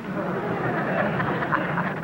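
Live studio audience laughing at a joke, a dense wash of many voices laughing at once that holds steady through the two seconds.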